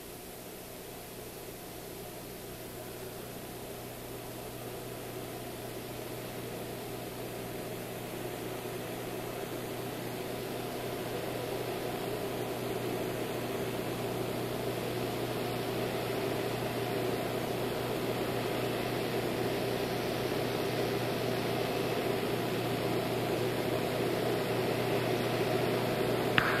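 Steady rushing noise of an approaching aircraft over a low steady hum, growing gradually louder throughout.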